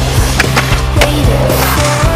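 A skateboard rolling on pavement with two sharp clacks of the board, under loud music.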